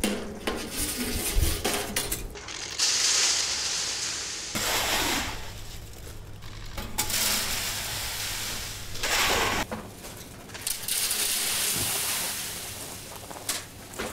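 Shovelfuls of sand tipped down a metal chute, rattling and hissing as they pour, three or four times, with the clink and scrape of the shovel on metal.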